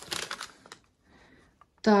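A paper till receipt rustling and crinkling as it is picked up and unfolded, a short burst in the first second.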